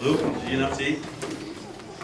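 Indistinct voices murmuring and talking, loudest in the first second and then trailing off into lower chatter, with a brief click a little past the middle.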